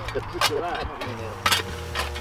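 A Stihl backpack blower's petrol engine running steadily while stone is blown under the sleepers, with men talking and a laugh over it.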